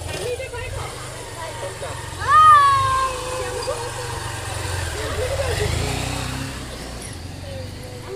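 Small two-wheeler engines, a motor scooter and a motorcycle, running at low speed with a steady low rumble, the engine note rising about five to six seconds in as they pull away. A voice calls out loudly about two seconds in.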